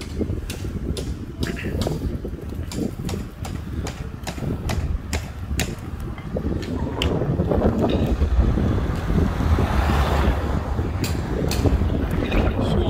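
Wind buffeting the microphone with a steady low rumble, while a car drives by on the road, swelling past in the second half and fading near the end. Short sharp clicks come in a regular rhythm of about two a second through the first half.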